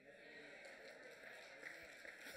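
Near silence: room tone, with a faint trace of voices.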